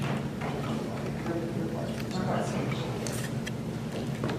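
Indistinct, low conversation among several people around a meeting table, over a steady low hum, with a few light clicks.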